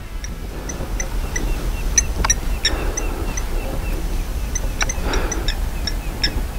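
Birds calling: short high chirps repeated irregularly, over a steady low rumble.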